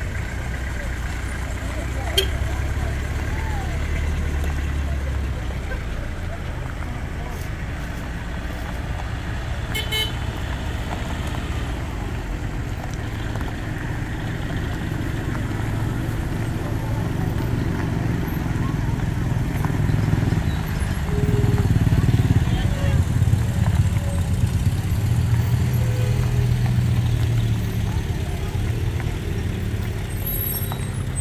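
Pickup truck engines running as a slow convoy rolls by on a dirt road, growing louder in the second half as a truck passes close, with a brief horn toot and voices of the crowd.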